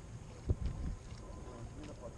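Wind buffeting the microphone in uneven low rumbling gusts, the strongest about half a second in.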